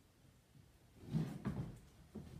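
A few dull thumps and knocks on a hardwood floor, clustered just over a second in: a barefoot dancer's feet and body pushing up from the floor and stepping.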